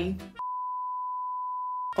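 A single steady electronic bleep at one pitch, about a second and a half long, starting and stopping abruptly with all other sound muted around it, of the kind dubbed in during editing to censor a word.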